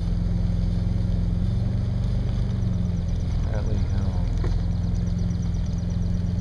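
Car engine and road noise running steadily at low speed, heard from inside the cabin as a continuous low hum.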